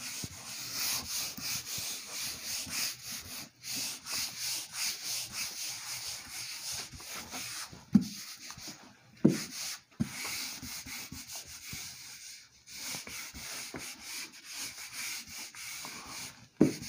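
A whiteboard duster wiping marker writing off a whiteboard, in rapid back-and-forth scrubbing strokes. There are two brief louder sounds about eight and nine seconds in.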